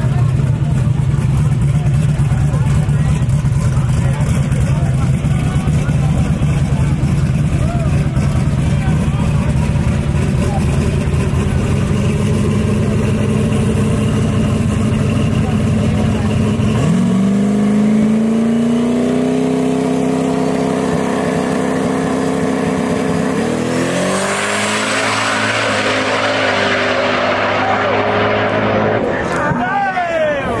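Turbocharged first-generation Chevrolet Camaro drag car idling with a steady low rumble. More than halfway through, its revs rise and are held on the starting line. With about six seconds left it launches at full throttle and pulls away down the track, the sound fading with distance.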